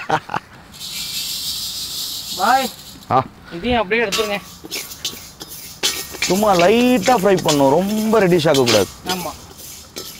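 Men's voices talking and laughing, and about a second in, a hiss lasting about a second and a half from dry moong dal grains rattling over a hot iron wok as they are stirred with a metal ladle for dry-roasting.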